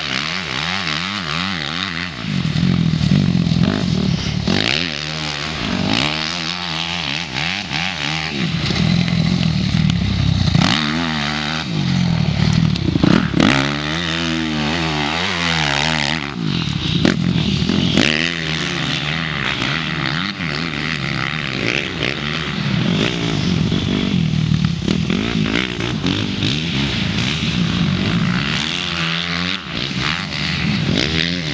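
Motocross dirt bike engine revving up and down through the gears as it laps a dirt track, loudest as it passes close by about midway through and then pulling away.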